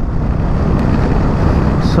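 Steady wind rush and road noise from a Royal Enfield Meteor 350 motorcycle riding at road speed while it overtakes a car.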